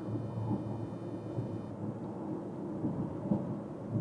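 Steady low rumble of road and tyre noise inside the cabin of a moving car.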